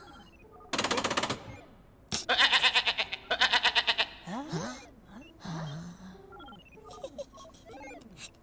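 Cartoon machine sound effects from the Teletubbies' lever-operated control panel: three bursts of fast, even rattling clatter, then softer gliding tones.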